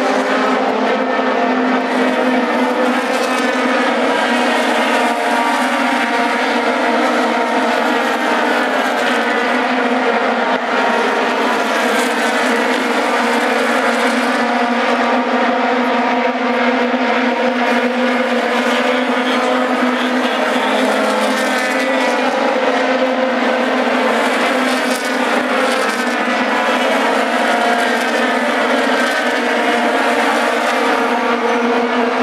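A field of IndyCars with Honda V8 engines running laps on an oval: a continuous loud engine drone with overlapping rising and falling pitches as cars go past.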